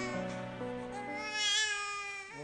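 Soft background music with held notes, and an infant starting to cry about a second and a half in: a short, wavering whimper.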